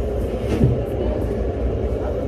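A steady low hum with faint, indistinct voices, heard from inside a parked car.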